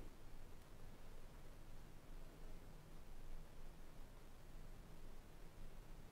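Homemade pickup winder turning slowly while magnet wire feeds onto a P90 bobbin, heard as a faint steady low hum.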